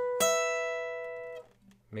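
Steel-string acoustic guitar playing a lead lick: one note is already ringing, a second, higher note is plucked just after the start on the neighbouring string, and both ring out together before being damped about a second and a half in.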